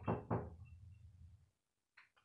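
A man's voice finishing a short phrase in Hindi, then a faint low hum that cuts off abruptly about a second and a half in.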